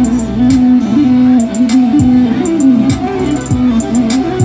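Electric violin played through a portable amplifier, a bowed melody with slides between notes, over a recorded backing track with a steady drum beat about two beats a second.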